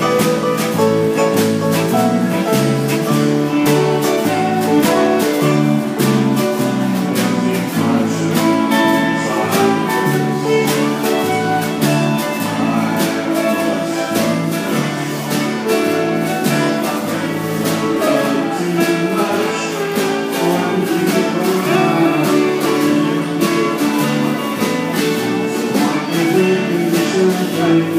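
Live country band playing: electric guitars, fiddle, keyboard and drum kit, with a steady beat.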